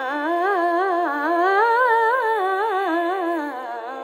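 A woman sings a wordless, heavily ornamented phrase in Indian classical style, her pitch swaying up and down a few times a second, over a steady drone. The voice swells in the middle and eases off near the end.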